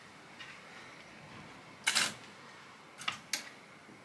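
Clothes hangers clacking on a wardrobe rail as a garment is hung up and the hanging clothes are moved: one louder clack about two seconds in, then two light clicks about a third of a second apart near the end.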